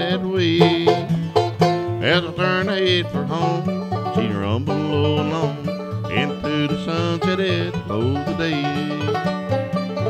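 Banjo and acoustic guitar playing a bluegrass instrumental break, the banjo picking quick notes over the guitar's rhythm.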